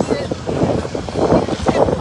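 Wind buffeting a phone's microphone outdoors, a rough, uneven rumbling noise, just after the last word of a spoken greeting.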